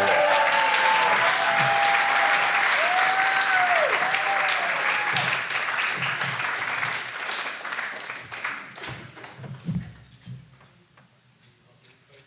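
Dinner audience applauding, with voices calling out over the clapping in the first few seconds; the applause thins out and dies away about nine to ten seconds in.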